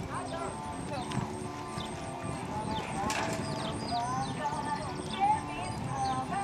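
A horse cantering on dirt, its hoofbeats knocking in a repeated rhythm, with voices and music in the background.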